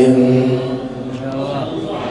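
A man's chanted sermon voice holding one long, steady note that dies away in the first second, leaving only a fading tail.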